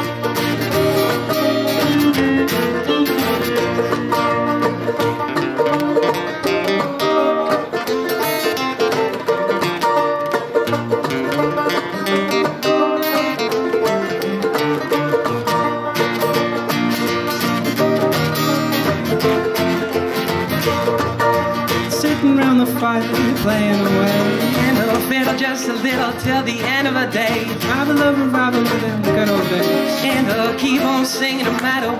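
A live bluegrass band plays an instrumental break on banjo, acoustic guitar and fiddle, with no singing. Some sliding notes come in the second half.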